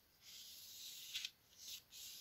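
Pencil scratching across paper while drawing a curved line: one faint stroke of about a second, then two short strokes.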